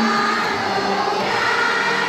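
A large group of schoolchildren singing a prayer together in unison, holding each note briefly before moving to the next.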